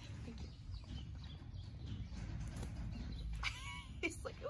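Thoroughbred horse sniffing and snuffling close up with its nose down in wood-shavings bedding, with a low rumble of breath and faint scattered rustles; a short pitched chirp-like call comes in near the end.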